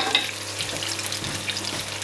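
Halved cherry tomatoes and sliced red onions frying in olive oil in a pan on medium heat: a steady sizzle.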